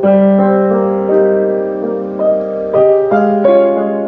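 Boston GP178 grand piano being played: slow chords, each new chord struck about every half-second to a second and left ringing as it fades.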